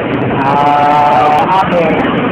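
A drawn-out, wavering voiced call lasting about a second, loud over steady street noise.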